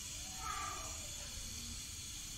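Keema simmering in water in a lidded pan on the stove: a steady faint hiss.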